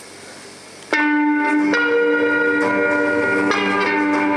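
Live amplified guitar music starts abruptly about a second in: loud, long-held ringing notes that change roughly once a second, over a quieter room noise before it.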